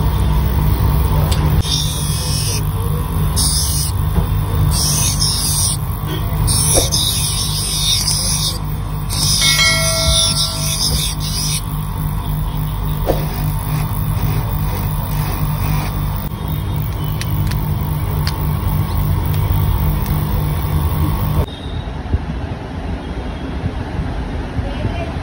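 Lens hand edger's grinding wheel running with a steady hum. In the first half a plastic spectacle lens is pressed against the wheel in several bursts of hissing grinding, each a second or more long, shaping the lens edge to fit the frame. The sound drops suddenly near the end.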